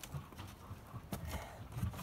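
Boots knocking and scuffing against a wooden plank door and wall as someone climbs it, with low thumps and a few sharp knocks a little past the middle and again near the end.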